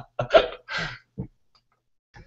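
A man laughing in three short breathy bursts that die away after about a second.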